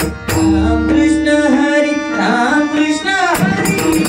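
Marathi devotional bhajan: a male voice holds a long sung note over harmonium, bending down in pitch about three seconds in. The pakhawaj and tabla drumming thins out under the held note and comes back in near the end.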